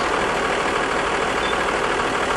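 A vehicle engine idling, a steady unbroken rumble with no changes.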